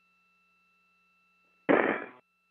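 Faint steady hum of tones on a spacewalk's radio comm loop. About 1.7 seconds in, a short loud burst of radio noise, as a transmission keys open, cut off abruptly after about half a second.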